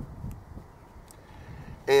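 Faint steady background noise, then a man's voice begins near the end.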